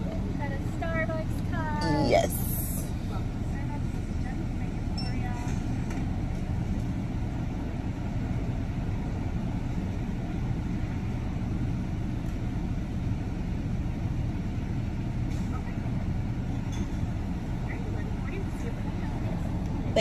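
Car engine idling, heard from inside the cabin: a steady low hum that holds level throughout, with a person's voice briefly in the first couple of seconds.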